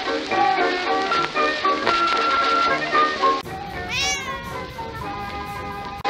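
Upbeat background music that drops quieter about three and a half seconds in. A domestic cat then meows once, a single call rising and then falling in pitch.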